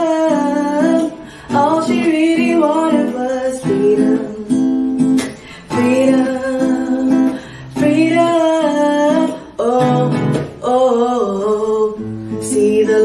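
A woman singing solo with her own nylon-string classical guitar, in sung phrases broken by short pauses for breath.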